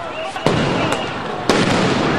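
Police tear gas and crowd-control rounds going off: three sharp bangs, the loudest about one and a half seconds in, over a steady rush of noise.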